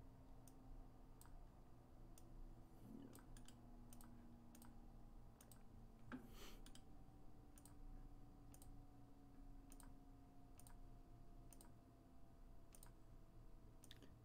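Faint, irregular clicks of a computer mouse and keyboard, scattered through the stretch, over a low steady room hum.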